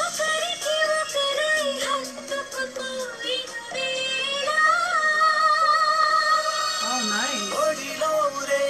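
Indian film song playing: a high singing voice carries the melody over the backing track, holding one long note through the middle.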